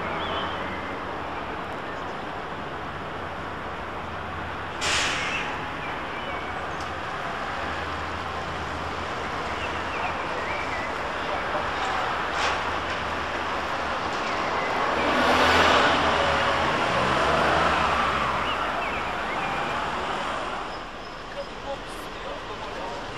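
Street traffic at a trolleybus stop: a steady low hum, a short hiss of released air about five seconds in as the trolleybus pulls away, and a louder swell of passing vehicle noise in the second half.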